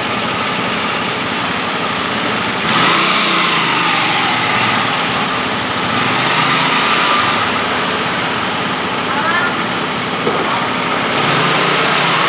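Motor scooter engines idling close by, growing louder about three seconds in.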